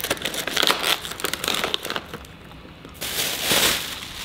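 Crinkling and crackling of packaging as a small cardboard box of chocolate is torn open, dropping quieter about two seconds in. A plastic bag then rustles loudly near the end.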